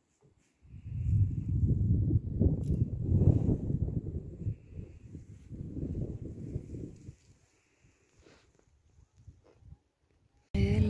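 Wind buffeting the microphone: an uneven low rumble that rises and falls in gusts and dies away about seven seconds in, with a few faint knocks near the end.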